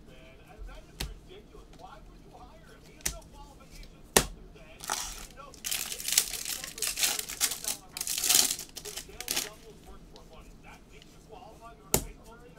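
A few sharp taps, then a trading-card pack's foil wrapper being torn open and crinkled for about four and a half seconds.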